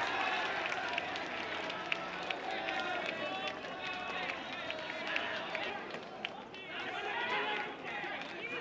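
Baseball stadium ambience: men's voices calling and shouting across the ground, louder near the end, with scattered sharp clicks.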